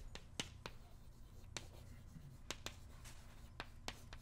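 Chalk writing on a blackboard: a series of faint, sharp, irregular clicks as the chalk taps and strokes out a line of text.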